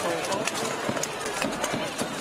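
Steel weapons striking plate armour and shields in a mass armoured melee: scattered sharp knocks and clanks over a background of shouting voices.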